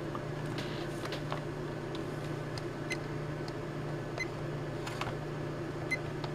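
Steady low electrical hum, with a few faint clicks; near the end a button on the Kill A Watt EZ power meter clicks as its display is switched to the voltage reading.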